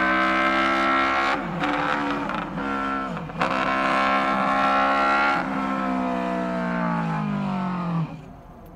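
High-pitched exhaust note of a Honda RC116, a 49.8 cc air-cooled four-stroke DOHC twin-cylinder racing motorcycle, pulling hard with brief breaks in the note at gear changes about one and a half, two and a half and three and a quarter seconds in. Over the last two or three seconds the pitch sinks steadily as the engine slows.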